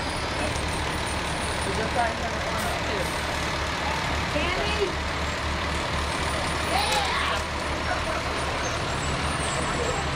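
Fire tanker truck's diesel engine running with a steady low rumble as it rolls slowly past over wet pavement, with a brief hiss about seven seconds in.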